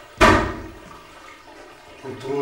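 Water splashing in a bathroom sink: one sudden loud burst about a quarter of a second in, dying away within half a second.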